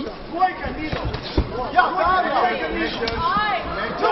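Voices talking and calling out in a large hall, with a low thud about a second and a half in and a short sharp click about three seconds in.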